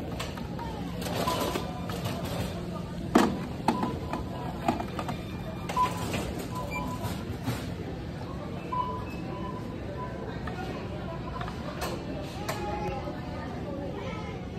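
Busy store checkout ambience: background voices and music with a steady hum, a few short beeps, and several knocks, the loudest about three seconds in.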